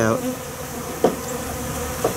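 Honeybees buzzing steadily around a frame of honeycomb. They are robber bees tearing open the capped cells and carrying the honey off. A single short tick sounds about a second in.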